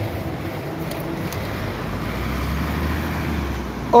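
City road traffic: vehicles running past on the street, a steady hum of engines and tyres, with a low rumble swelling in the second half.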